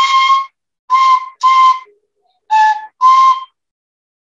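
Beginner playing a transverse flute: five short, breathy notes, four on the same high pitch and the fourth a little lower, with brief gaps between them.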